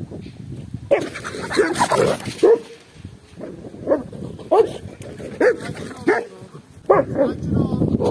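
A dog barking in a string of about ten short, fairly high-pitched barks, starting about a second in and spaced irregularly until near the end.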